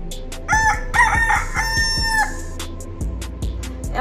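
A rooster crowing once as an inserted sound effect: a few short notes followed by one long held note, over a faint backing beat of regular clicks.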